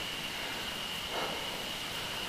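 Steady wind and tyre noise of a bicycle rolling along a paved road, heard through a bike-mounted GoPro, with a thin steady high-pitched tone running under it.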